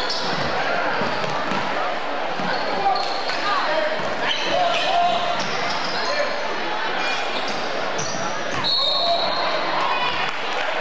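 A basketball bouncing on a hardwood gym floor during play, with players' sneakers squeaking, under the steady chatter of spectators in a large hall.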